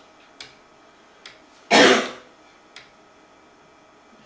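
A man coughs once, loudly, a little under halfway through. Around it come three short sharp clicks from the front-panel toggle switches of a homebuilt TTL computer, flipped as its clock is single-stepped.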